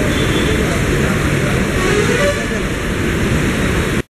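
Express train's passenger coaches rolling into the station alongside the platform, a steady loud low rumble of wheels on the rails.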